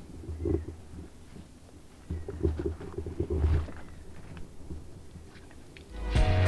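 Faint low rumbling and a few muffled knocks from the microphone being handled as the camera is moved.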